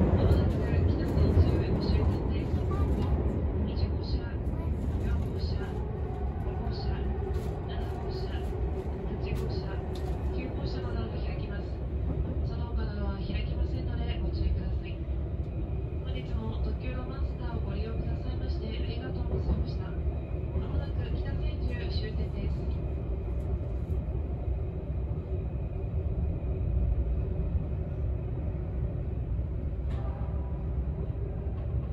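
Steady low running rumble inside the cabin of an Odakyu 60000-series MSE Romancecar electric train under way, with faint voices mid-way.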